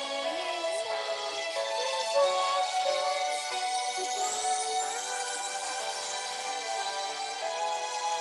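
Karaoke backing music with a girl singing the melody along to it, heard over a video call.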